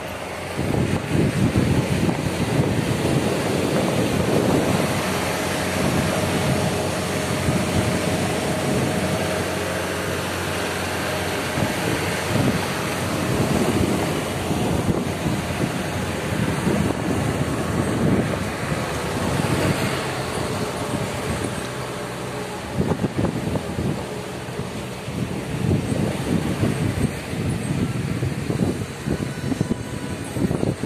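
Wind buffeting the microphone of a motorcycle moving at speed, in uneven gusts over a steady rush of engine and road noise. The gusts ease briefly about two-thirds of the way through.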